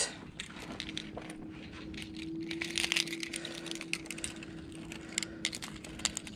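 Small metallic clicks and rattles as a crankbait and its treble hooks are handled and worked free of a caught bass, over a steady low hum.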